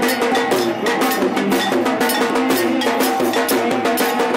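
Lively devotional procession music: fast, steady clanking of brass hand cymbals over drums, with a melody running beneath.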